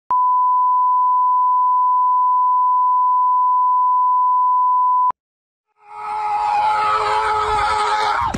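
A 1 kHz colour-bars test tone: one steady beep held for about five seconds, then cut off abruptly. After a short gap, a louder sound with several tones swells in and drops away in a quick falling glide at the end.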